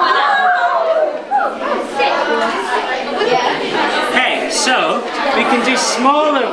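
Excited chatter and exclamations from a group of students, with overlapping voices rising and falling. This is their reaction to a burst of ignited methane bubbles.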